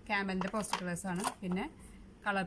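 A woman speaking in short phrases, with no other clear sound beside the voice.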